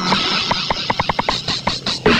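Electronic dance music with a hissing noise layer and a run of quick, sharp percussion hits.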